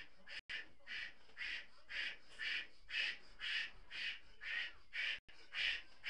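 Short, quick puffs of breath blown into a large latex balloon, about two a second in a steady rhythm.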